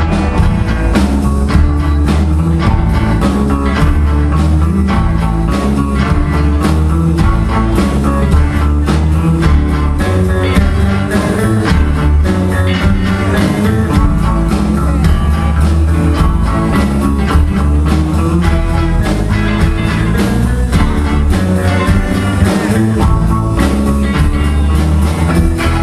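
Live blues band playing with electric guitars and a drum kit, a steady loud groove with prominent low end.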